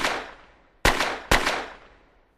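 Three gunshots fired into the air as a stage sound effect: one right at the start, then two more close together about a second in, each with a short echoing tail.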